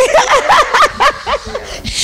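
Women laughing in quick, short repeated bursts.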